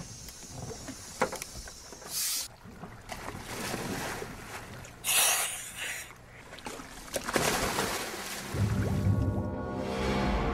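Divers going into the water from a boat: three short bursts of rushing, splashing water noise. Music with long held notes comes in about a second and a half before the end.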